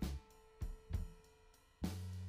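Instrumental background music with a drum kit: drum and cymbal hits over held notes and a bass line.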